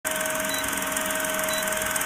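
Old film projector sound effect: a steady whirring rattle with a faint constant hum underneath.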